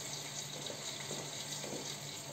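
Chopped chicken and onions sizzling in a pot on a gas burner: a steady, even hiss with faint crackles.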